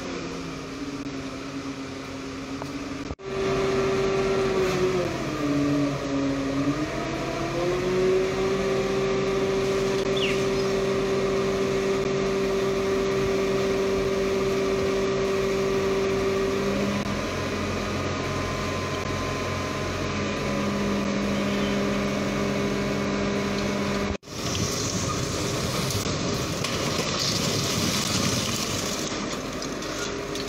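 Diesel engines of heavy rescue machinery running with a steady drone; about five seconds in one engine's pitch sags for a couple of seconds and then climbs back. Near the end a rougher rushing noise takes over.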